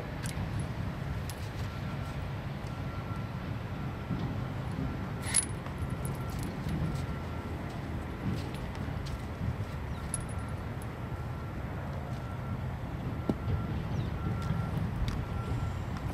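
Steady low rumble of distant quarry trucks and machinery, with a faint short high beep repeating through it. Scattered metallic clicks and rattles from the catch pole's cable noose and the trap chain as the trapped coyote is noosed, the sharpest about five seconds in.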